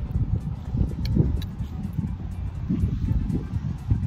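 Wind buffeting the phone's microphone: a low, uneven rumble with a few faint clicks.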